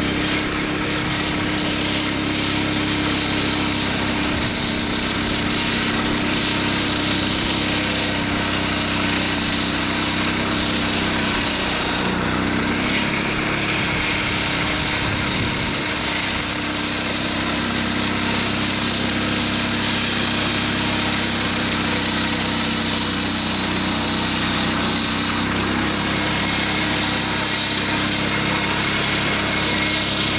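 Small gasoline engine on a wheeled ice saw running steadily, driving a large circular blade that cuts a groove through lake ice to harvest ice blocks. The engine note dips briefly about halfway through, then steadies again.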